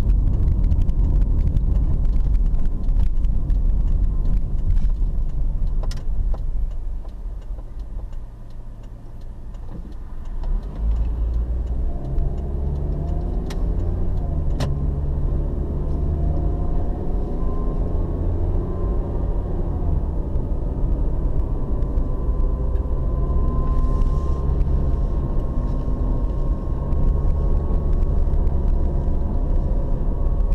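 Car engine and road rumble heard from inside the cabin. The sound drops for a few seconds about a quarter of the way in as the car slows, then the engine rises in pitch as the car pulls away and accelerates.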